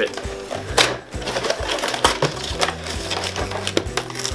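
Cardboard boxes being pulled and torn open by hand, with short rips and scrapes, over background music with a steady beat.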